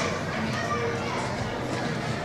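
Indistinct shouts and calls of youth soccer players and onlookers overlapping across a large indoor arena, with one sharp knock right at the start.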